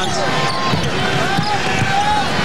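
Basketball dribbled on a hardwood court during live play, over steady arena crowd noise.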